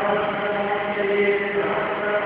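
Devotional chanting sung in long, held notes that change pitch slowly.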